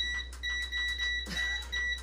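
Electric fireplace's control panel beeping as its buttons are pressed over and over: a run of short, same-pitched beeps, a little over three a second, as the settings are stepped through to shut the heat off.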